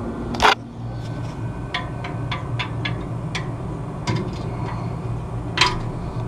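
Wires and metal terminals being handled inside an air conditioner condenser's electrical compartment: a short scraping rustle about half a second in, then a string of light clicks and taps, over a steady low hum.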